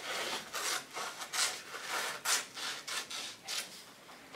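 Scissors cutting through brown construction paper: a run of crisp snips, about three a second.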